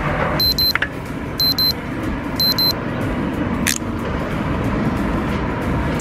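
Steady road-traffic and vehicle noise, with a short high double beep repeated three times, about once a second, in the first three seconds.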